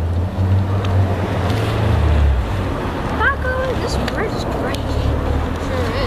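Low rumble of wind buffeting an outdoor microphone, with a few short voice sounds about halfway through.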